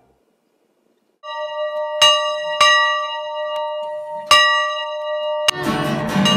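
A bell struck several times, each strike ringing on with a clear, sustained tone. Near the end, acoustic guitar strumming starts in.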